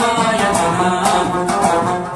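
Afghan rabab plucked in a quick rhythm, accompanying a man singing a Pashto folk song, with a clay-pot drum (mangi) keeping the beat.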